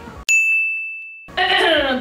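A single bright ding, struck once about a quarter second in and ringing down evenly for about a second over complete silence, like an edited-in bell sound effect. A woman's voice follows.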